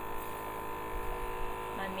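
Luminess airbrush makeup compressor running steadily on its heavy setting, a constant hum with a high-pitched tone, while the airbrush sprays tanning makeup onto a leg.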